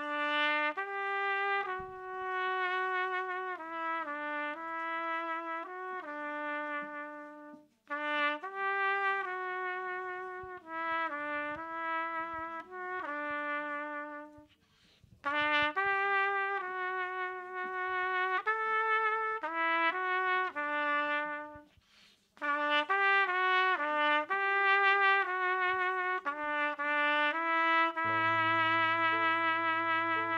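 Solo trumpet playing the slow melody of a worship song note by note, in four phrases with short breaths between them. A low held chord comes in under it near the end.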